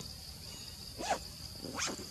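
Two short, high-pitched calls from a monkey in the trees, about a second in and near the end, over a steady high drone of insects.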